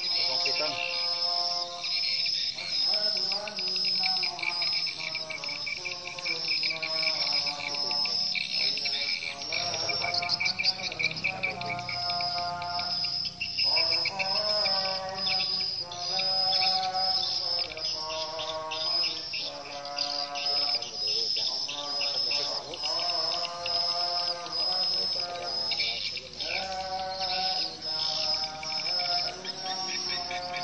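A flock of swiftlets gives a dense, continuous high-pitched twittering. Over it, a lower warbling call repeats in cycles of about two to three seconds.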